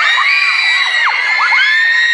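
Concert crowd of fans screaming: several high-pitched voices overlapping in long held screams, each rising at the start and dropping off after about a second.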